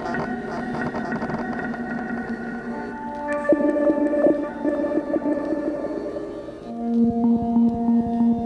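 Cello bowed in a free improvisation, its sound extended by live electronics driven by a sensor-equipped bow, with sustained tones layering over one another. A louder new note enters about three and a half seconds in, and a strong low tone swells in near the end.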